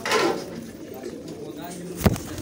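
A flock of pigeons cooing close by while feeding. A loud rush of noise comes in the first half-second, and a sharp knock comes at the very end.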